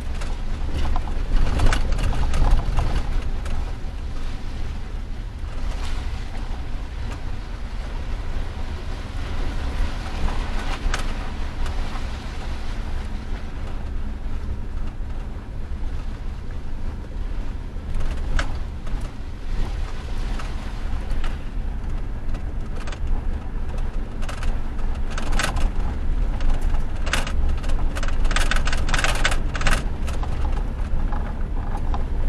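Inside a moving truck's cab: a steady low rumble of engine and road noise, with occasional short knocks and rattles, most frequent near the end.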